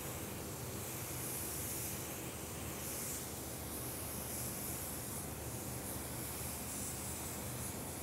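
Gravity-feed paint spray gun hissing as it lays primer onto a car fender in several passes, the hiss swelling and easing as the trigger is pulled and let off. A steady hum from the running paint booth's fans sits underneath.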